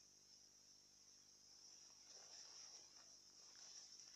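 Near silence, with faint steady high-pitched insect chirring from the field.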